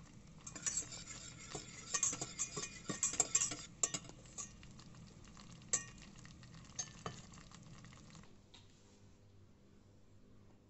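A wire whisk clinking and scraping against a stainless steel saucepan as chocolate pieces are whisked into a hot liquid to make a chocolate sauce. Rapid clinking for the first few seconds, then a few scattered clinks that stop about eight seconds in.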